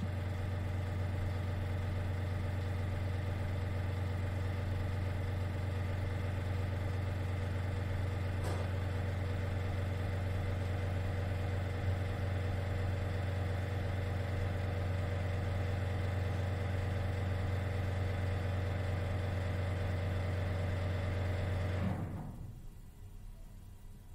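Building ventilation system running with a loud, steady low hum and a stack of steady tones above it, then winding down and stopping about 22 seconds in.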